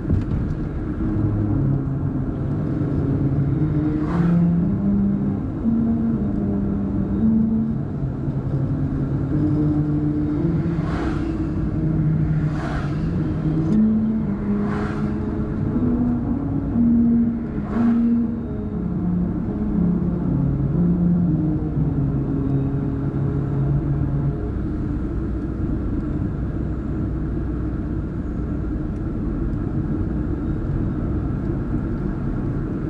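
Car cabin noise while driving: a steady engine and tyre rumble. For about the first twenty seconds a low pitched sound steps up and down over it, with a few short hisses.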